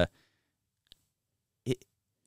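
A pause in a man's speech: near silence, broken by a faint click about a second in and a brief vocal sound just before the end.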